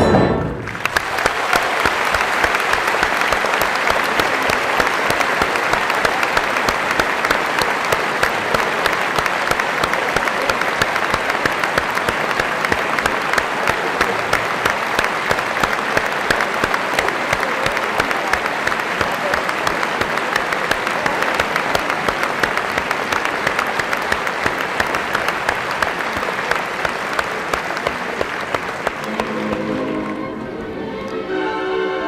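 An opera house audience applauding, steady dense clapping, just after an orchestral chord that cuts off in the first second. The clapping thins a little near the end.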